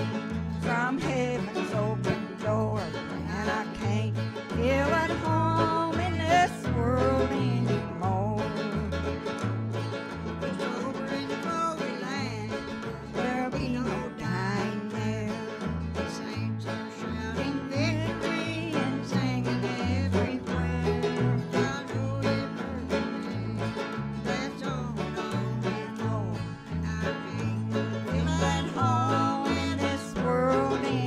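Acoustic guitar and banjo playing a bluegrass-style tune together, over a steady, even bass-note rhythm.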